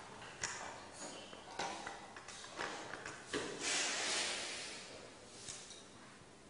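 Light clicks and knocks of a battery and its leads being handled on a wooden desk as the battery is taken out and turned round in a small demonstration circuit. About three and a half seconds in there is a rustle lasting over a second.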